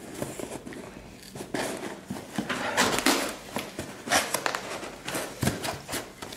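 Cardboard parcel being handled on a kitchen countertop: irregular scraping, sliding and knocks of the box against the counter, with rustling of cardboard.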